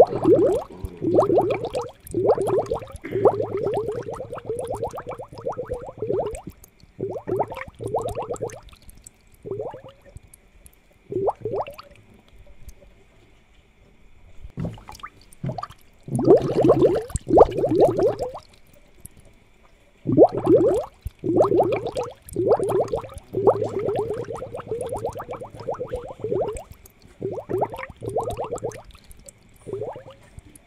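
Aquarium water bubbling and gurgling in uneven bursts, each lasting from about a second to several seconds, with short pauses between. A faint steady high tone runs underneath.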